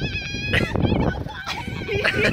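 A person's high, wavering, bleat-like laugh that stops about half a second in, followed by a short burst of noise over a low rumble.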